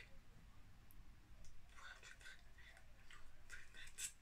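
Near silence: room tone with a low hum, broken by a few faint, short clicks and soft smacking noises, a cluster of them in the second half.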